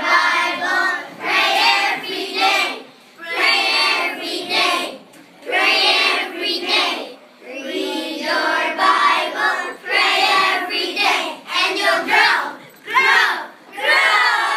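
A group of young children singing together, in short phrases with brief breaks between them.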